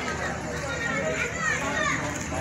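Several people's voices talking and calling out over one another, with some high-pitched voices rising and falling in the second half.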